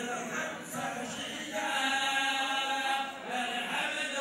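Men's voices chanting Moroccan Sufi samaa and madih, unaccompanied devotional song, with a long held note from about a second and a half in.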